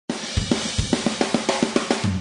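A drum kit playing a short intro: a few kick and snare hits, then a quick, even fill of drum strikes about seven a second over ringing cymbals.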